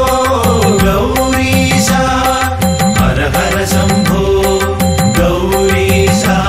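Malayalam Hindu devotional song music to Shiva, with a steady repeating beat and melodic lines over it.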